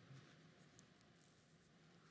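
Near silence in a quiet room, with a few faint, brief rustles of paper being handled.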